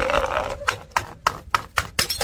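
Full glass jar of pickles bouncing down concrete steps: a quick series of hard knocks and clatters, about six in a second and a half, as it strikes step after step.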